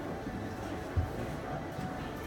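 Busy railway-station platform ambience heard from a stopped train's cab: faint music and distant voices under a steady hum, with one short low thump about a second in.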